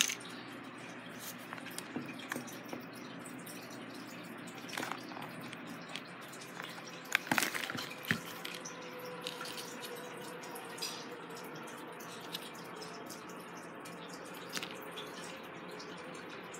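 Faint scattered taps and clicks of small objects being handled on a craft table, over a low steady room hum; the sharpest few come about halfway through, and a faint steady tone sets in from then on.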